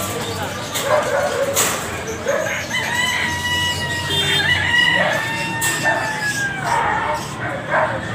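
A rooster crowing once: a long, drawn-out call of about three seconds that sags in pitch at its end, heard over people's voices.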